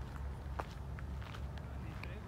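Footsteps of someone walking along a grassy orchard row, scattered soft clicks with one sharper tick about half a second in, over a steady low rumble.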